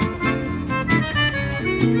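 Gypsy jazz trio of accordion, archtop guitar and violin playing, the guitar's chords struck in a steady rhythm under the accordion.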